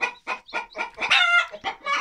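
Chickens clucking in a quick run of short calls, with one longer, higher-pitched call about a second in.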